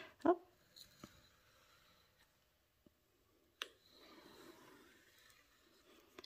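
Faint scraping of a craft knife blade drawn along a ruler through folded paper on a self-healing cutting mat, with a single sharp click about three and a half seconds in.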